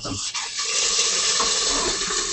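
Mandu (Korean dumplings) sizzling and hissing in oil and steam in a lidded skillet, a steady hiss that sets in just after the start.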